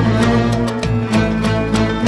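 Instrumental break of a Turkish alaturka-style song, with melodic instruments over a steady percussion beat.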